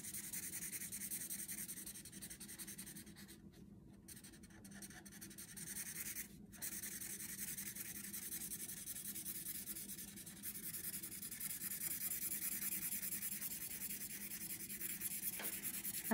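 Thin felt-tip marker scratching on paper in rapid back-and-forth colouring strokes, filling in a large area. The scribbling stops briefly twice, a few seconds in, then carries on.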